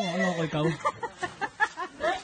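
A long drawn-out voice, then a quick run of short clucks from chickens.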